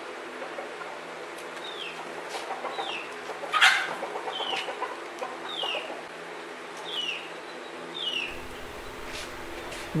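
A chicken giving a series of short, high, falling peeps, about one a second, with one louder sharp sound partway through.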